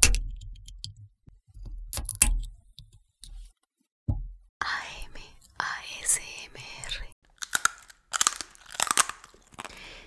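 An aluminium Tecate beer can's pull tab is cracked open right at the start, giving a sharp, loud pop. Another sharp crack follows about two seconds in. Later comes a busier stretch of crackling and clicking sounds.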